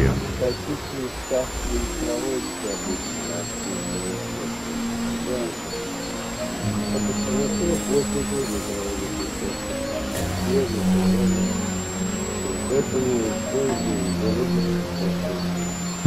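South American sea lions calling in a colony, wavering and drawn-out cries, with a low sustained music bed underneath.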